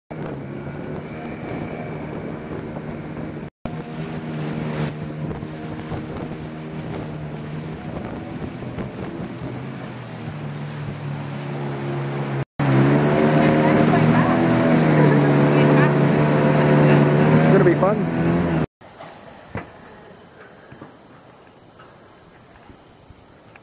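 Outboard motor of a river longboat running at speed, a steady low hum over water rushing past the hull. It is louder for the second half, with its pitch wavering. Near the end, after a cut, a quieter steady high-pitched buzz takes over.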